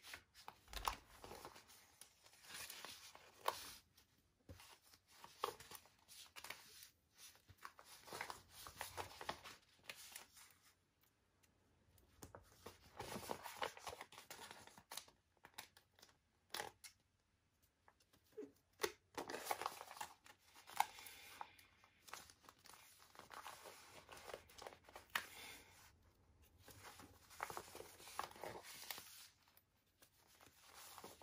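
Stickers being peeled one after another off a glossy sticker sheet and pressed onto a paper magazine page, with the sheet crinkling as it is handled. The sounds are faint short rips and crackles, coming on and off with brief pauses.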